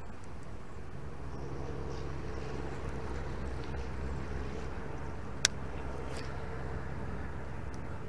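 Electric trolling motor running with a steady low hum that settles in about a second in, with one sharp click about halfway through.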